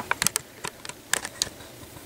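A quick, irregular run of about a dozen sharp clicks, like keys being tapped, stopping about a second and a half in.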